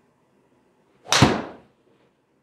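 Golf driver striking a teed ball: one sharp crack about a second in, fading out within half a second.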